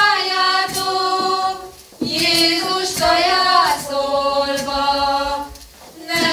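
A folk choir singing a Hungarian Christmas nativity song together, without instruments, in held phrases with a short break about two seconds in and another near the end.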